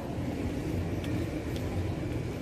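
Airport terminal hall ambience: a steady low rumble of the busy hall, with a few faint clicks.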